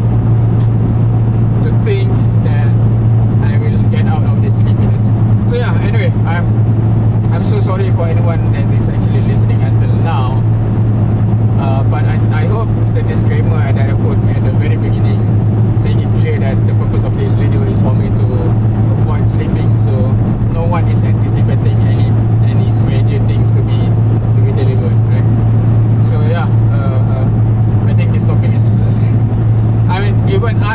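Steady low drone of a car's engine and road noise heard inside the cabin while cruising at constant speed, with a man's voice talking on and off over it.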